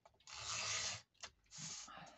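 Refillable permanent-glue tape runner drawn twice along the edge of a sheet of patterned paper, each stroke a dry rasping scrape, the first longer and louder, the second shorter near the end.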